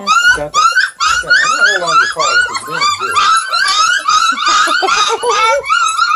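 A litter of hungry Redbone Coonhound puppies whining and squealing, many short high cries that rise and fall and overlap several times a second without a break.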